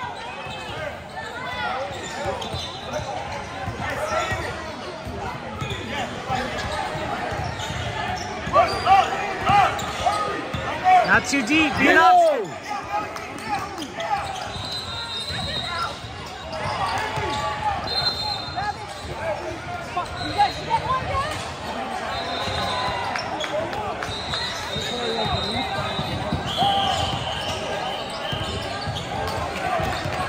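Basketball game noise in an echoing gym: a ball bouncing on the hardwood court and sneakers squeaking, with spectators and players calling out throughout. It is loudest about eight to twelve seconds in.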